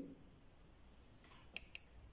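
Marker pen writing on paper: a few faint, short strokes about a second and a half in, otherwise near silence.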